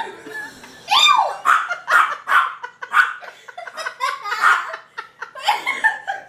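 People laughing in a run of short bursts.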